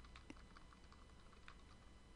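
Faint, irregular key clicks of typing on a computer keyboard.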